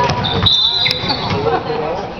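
A referee's whistle blown once, a steady shrill blast held for about a second, stopping play. A basketball bounces on the gym floor and crowd voices run underneath.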